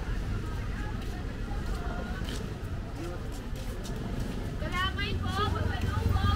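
Outdoor street ambience: scattered voices of people talking over a steady low rumble, with a nearer voice a little before the end.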